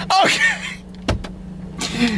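A man laughing out loud, one burst with a falling pitch right at the start, then a single knock about a second in, over a steady low hum inside a car.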